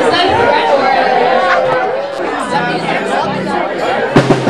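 Several voices talking and calling out over one another in a crowded hall, with a couple of short low held notes in the second half.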